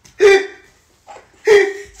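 A man laughing hard: two loud, sudden bursts of laughter, about a second apart.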